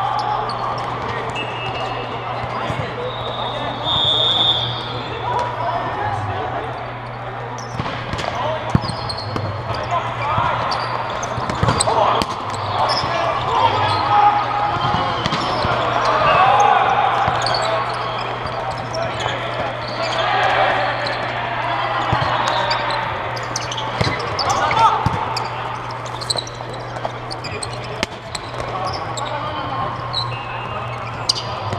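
Volleyball game sounds: the ball smacked off players' hands and arms a number of times, with players calling out. A steady low hum runs underneath.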